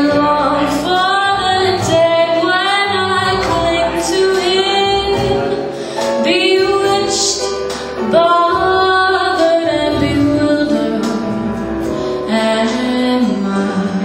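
A woman singing a jazz standard into a microphone over a pre-recorded backing track, in sustained sung phrases with short breaks between them.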